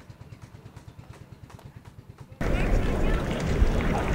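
A low, steady engine throb, typical of a small boat's motor. About two and a half seconds in it cuts suddenly to much louder outdoor hubbub with faint voices.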